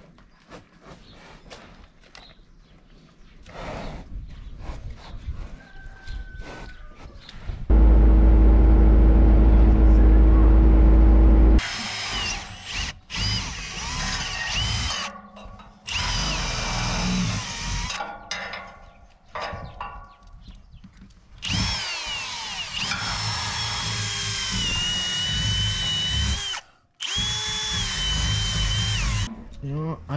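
Cordless drill boring into metal in a series of bursts through the second half, its whine sliding up and down in pitch as it bites and speeds up. Before that, a loud low steady hum lasts about four seconds.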